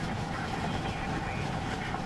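Steady road and wind noise inside a moving vehicle's cabin: an even rumble with a faint, steady hum.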